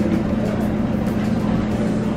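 A steady low mechanical hum, one constant drone that holds level throughout, with a wash of background noise above it.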